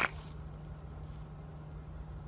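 A single sharp click of the plastic blister package of a crankbait lure being handled, followed by a faint steady low hum.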